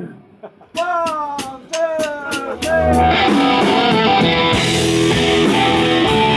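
Live blues-rock band starting a song. After a brief hush, a few bending lead notes sound over a steady ticking beat, then about three seconds in the full band comes in: drums, electric bass and electric guitar.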